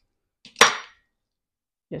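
One sharp clack about half a second in, with a brief ringing tail, from a knife and peppers being handled at the cutting board.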